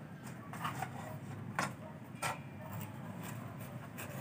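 Paper and cardboard props handled on a tabletop: a few short rustles and taps, about three of them, over a low steady background hum.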